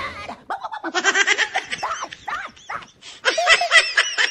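Laughter in quick repeated bursts, in two runs with a short lull about three seconds in.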